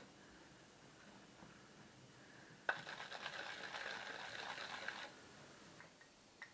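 Frozen sloes clattering: a quiet start, then a click and a couple of seconds of dense rattling of small hard berries, stopping abruptly.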